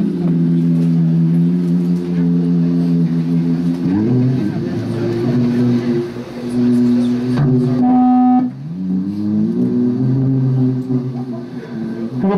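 Sustained electronic drone from a small analog synthesizer box, holding a low steady tone, sliding up in pitch about four seconds in, jumping briefly to a higher tone with a click a little past halfway, then sliding down and back up to a lower steady tone.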